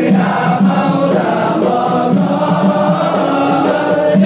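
A large group of men chanting an Islamic devotional song together in unison, the voices loud and sustained, moving through a slow melody.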